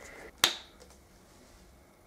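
Plastic flip-top cap of a Fa shower gel bottle snapping open: one sharp click about half a second in.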